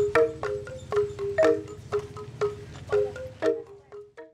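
Central Highlands gong ensemble (cồng chiêng) playing: several gongs of different pitches struck in a steady interlocking rhythm, about two to three strokes a second, each ringing briefly. The playing fades out near the end.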